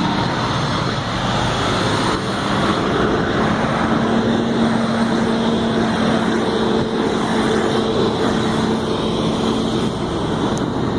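Steady highway traffic noise, with a low hum held on one pitch from a few seconds in until near the end.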